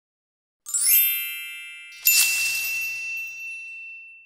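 Channel logo sting made of chime-like tones: after a short silence, a quick upward run of bright chimes that fades, then, about two seconds in, a single bright ding that rings on and slowly fades out.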